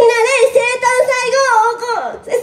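A young woman's amplified voice singing a short phrase into a handheld microphone, in long held notes that waver slightly.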